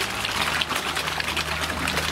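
A packed shoal of golden fish feeding at the surface: a dense, continuous patter of small splashes and slurping gulps as they jostle and snap at the water. A low steady hum sits underneath from about half a second in.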